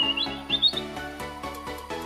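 Background music with a steady beat, with a short run of quick bird-tweet chirps in the first second: a tweet sound effect laid over the music as the Twitter bird logo animates.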